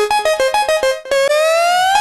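Background music on an electric piano or synth keyboard: a quick run of short staccato notes, then one long note that slides upward in pitch through the second half.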